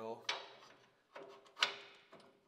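Steel bolt and washers on a truck's fuel tank strap mount clinking as they are handled by hand: a few sharp metal clinks, the loudest about one and a half seconds in.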